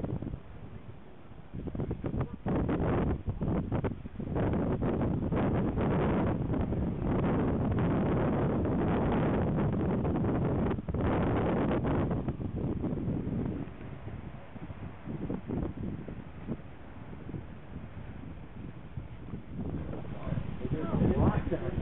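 Wind buffeting the microphone in gusts. It is strongest for about ten seconds, starting a couple of seconds in, then eases to a lower rumble.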